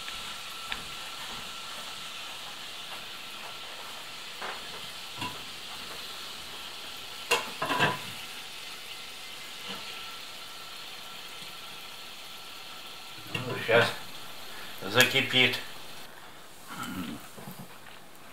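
A frying pan sizzling steadily on the stove, with the odd light scrape or tap as the food in it is stirred.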